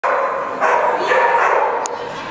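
Dog barking repeatedly and excitedly in a large indoor hall, several loud, drawn-out barks one after another, as it sets off running an agility course.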